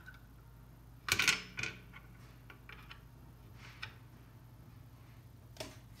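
Handling noise from the adjusting rod and brass cap on top of a TG611 turbine governor: a short scraping clack about a second in, then a few faint clicks, over a steady low hum.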